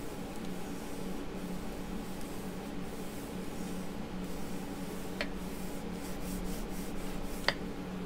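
Acrylic roller rubbed back and forth over wax paper on a sheet of polymer clay, burnishing it: a steady soft rubbing, with two light clicks in the second half.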